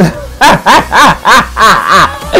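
A woman laughing loudly in a quick run of about six short 'ha' bursts, roughly four a second, starting about half a second in.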